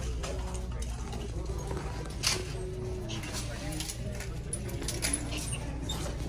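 Indistinct voices in the background of a shop, with a steady low hum and a single sharp click a little over two seconds in.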